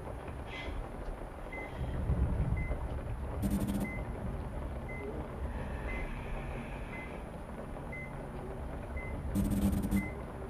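Bedside patient monitor beeping a short high tone about once a second, in a steady heartbeat rhythm, over a low rumbling drone. A brief louder noise comes twice, about three and a half seconds in and again near the end.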